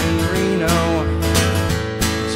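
Acoustic guitar strummed, accompanying a country song.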